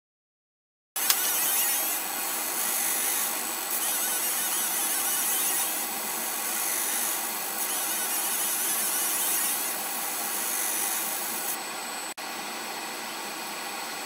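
Fiber laser marking machine engraving a gold bracelet nameplate, starting about a second in: a steady whir with a high-pitched hiss that swells in passes about a second long, roughly every two seconds.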